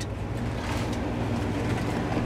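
A steady low mechanical hum, unchanging throughout, with a faint hiss over it.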